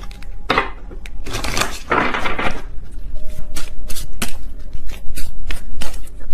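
A deck of oracle cards being shuffled by hand: a couple of short riffling swishes, then a quick run of sharp card taps and clicks in the second half.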